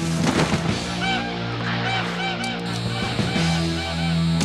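Cartoon geese honking in a run of short, repeated calls over a steady background music score.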